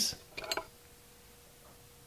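A steel wrench set down on the plastic platform of a digital kitchen scale: a short, light clatter of two or three knocks about half a second in, then near quiet.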